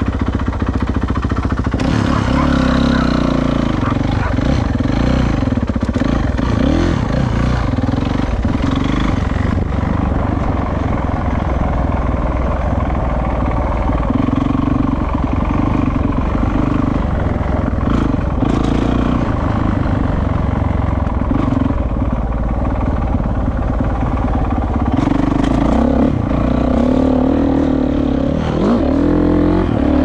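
Dirt bike engine running under load as it is ridden along a dirt track, its pitch repeatedly rising and falling with the throttle.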